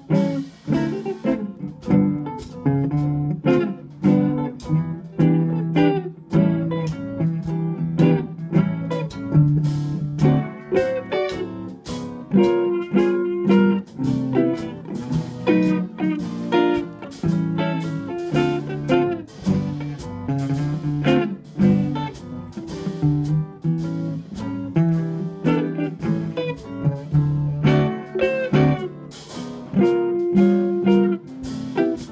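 A small band playing an instrumental jazz standard: two electric guitars carry a stream of plucked single-note lines and chords, backed by keyboard and a drum kit.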